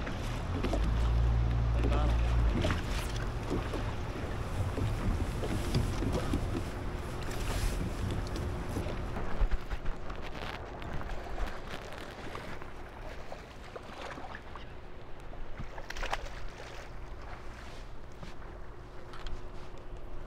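Wind buffeting the microphone on an open bass boat, heavy for the first couple of seconds and lighter after, over water noise around the hull. A faint steady hum runs from about three seconds in, with scattered small clicks and knocks from gear on the deck.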